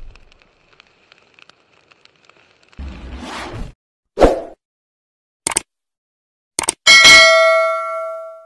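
Subscribe-button animation sound effects: a short whoosh about three seconds in, a loud pop, two sharp clicks, then a bright bell ding near the end that rings on and fades.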